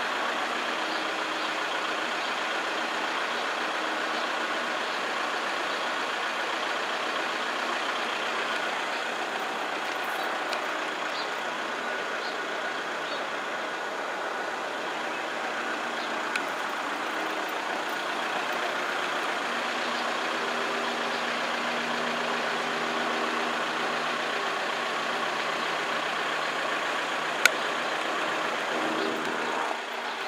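Level crossing warning alarm sounding steadily while the red lights flash, over a continuous rumble, with one sharp click near the end.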